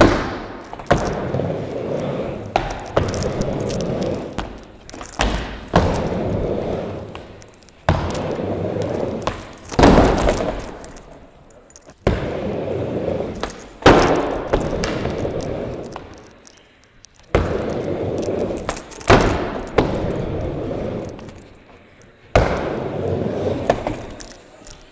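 Skateboard on a wooden mini ramp: again and again a sharp clack or thud as the board pops, strikes the metal coping or lands, followed by the rumble of its wheels rolling, which fades over a second or two.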